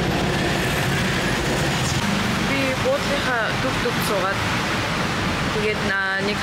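Steady background noise with indistinct voices coming in about two and a half seconds in.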